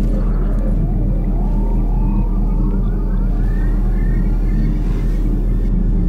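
Horror-film sound design: a loud, steady low drone under a cluster of eerie tones that glide slowly upward together for several seconds and fade out near the end.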